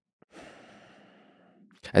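A man's audible sighing exhale, about a second long and fading, followed near the end by the start of his speech.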